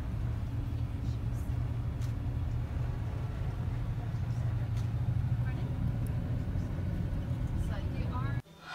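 Steady low engine and road rumble heard from inside a moving coach.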